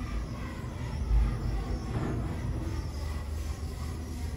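OTIS GeN2 gearless passenger lift car travelling upward: a steady low rumble of the car running through its shaft, with a brief louder low bump about a second in.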